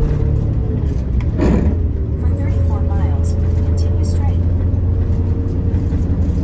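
MCI MC5B coach's diesel engine running steadily at highway speed, heard from the driver's seat with road noise. There is a short whoosh about a second and a half in.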